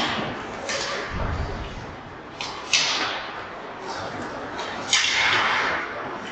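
Ice hockey skate blades scraping and carving on the ice in several sharp swishes, the loudest a little under three seconds in and near the end, with a dull low thud just after a second in.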